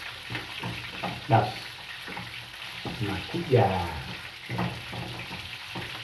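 Meat sizzling in a frying pan on a gas stove, with a wooden spoon stirring and scraping in a pot in repeated strokes.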